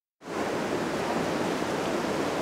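Steady rush of sea surf and wind, cutting in abruptly just after the start.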